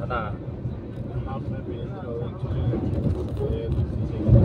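Steady low rumble of a moving passenger train, heard from on board while it runs past a train on the next track, with voices talking over it.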